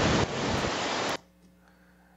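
A machine-generated landscape sound sample played back: a steady, white-noise-like rush like surf or running water, which stops abruptly about a second in, leaving faint room tone.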